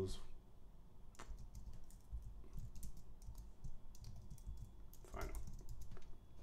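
Computer keyboard typing: irregular key clicks, a few at a time.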